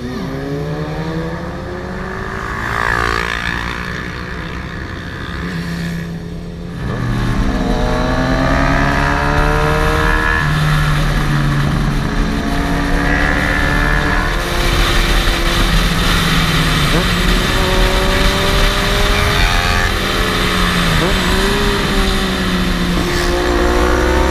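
Motorcycle engine heard from the rider's own bike, its pitch rising and falling again and again as it revs through the gears. Wind noise on the microphone swells from about seven seconds in as the bike picks up speed.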